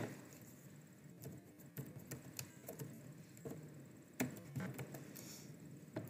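Faint computer keyboard typing: a scattered handful of soft key clicks over low room noise.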